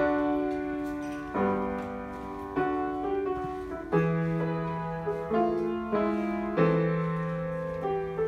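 Grand piano played solo: a slow piece of held chords, a new chord struck about every second and a half over a sustained bass note.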